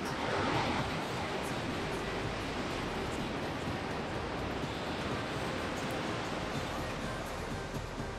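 Niagara Falls' water rushing: a steady, dense, even noise with no breaks.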